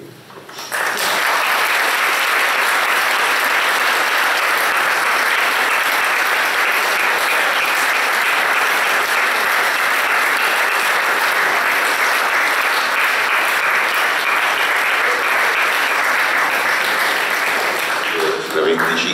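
Audience applauding: steady clapping from a roomful of people that starts abruptly just under a second in and holds evenly throughout.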